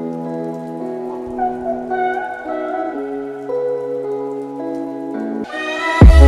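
Soundtrack music in a quiet passage: held synth chords and notes that change every second or so, with faint scattered crackling on top.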